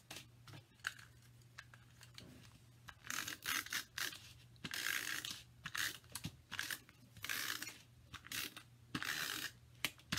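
Tape runner laying adhesive on a cardstock panel: a run of short raspy strokes, several a second, starting about three seconds in, with paper rustling between them.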